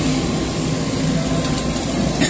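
JCB crawler excavator's diesel engine running steadily at working speed while the machine drives itself up onto a flatbed truck.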